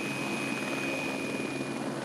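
Helicopter rotor and engine running steadily with a fast low beat. Over it, the thin high whine of a toy radio-controlled helicopter's small electric motor stops shortly before the end.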